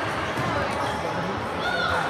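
Sounds of table tennis play in a busy sports hall: a few dull knocks and a short squeak near the end, over background chatter from people in the hall.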